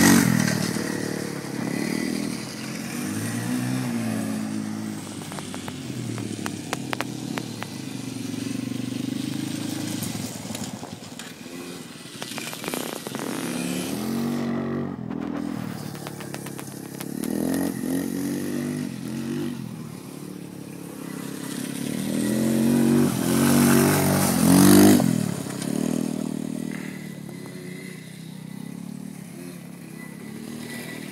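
Yamaha Raptor 250 quad's single-cylinder four-stroke engine revving up and easing off again and again as it is ridden over dirt jumps, loudest as it passes close about three-quarters of the way through.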